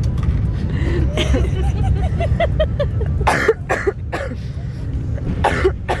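A woman laughs in short bursts, then coughs three times, sharply, over the steady low rumble of a moving train carriage.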